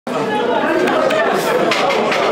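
Several men chatting at once, their voices overlapping in a lively group conversation.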